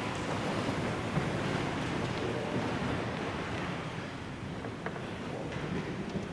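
Even rustling and shuffling noise of a church congregation settling between readings at Mass, with a few faint knocks.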